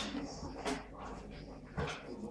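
A dog's low vocal sounds, with three sharp clicks or knocks spread through.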